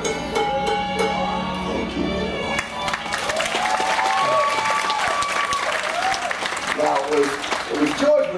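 Background music with held, gliding notes; audience applause breaks out about three seconds in and continues over the music.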